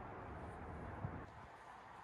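Faint steady background noise with a single light click about a second in.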